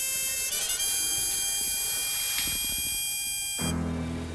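Tense background score: a shrill, high sustained chord that holds steady, then cuts off sharply near the end and gives way to low held notes.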